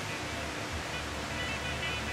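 Steady hiss of room tone and recording noise, with faint tones of background music.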